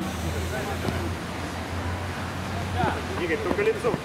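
Players' shouts and calls across an outdoor mini-football pitch over a steady low rumble, with a couple of sharp knocks in the last second or so.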